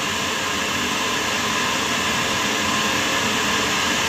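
A steady, loud rushing noise from a running appliance.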